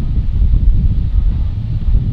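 Wind buffeting a shotgun microphone despite its furry windscreen: a loud, uneven low rumble.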